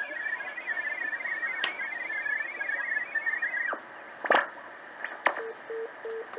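BITX40 40-metre SSB transceiver receiving through its speaker over a bed of band hiss. At first a signal of rapidly hopping tones warbles; it drops away in a falling whistle about halfway through as the tuning control is turned, and brief whistles sweep past. Near the end a Morse code (CW) signal comes in as a keyed tone of short and long beeps.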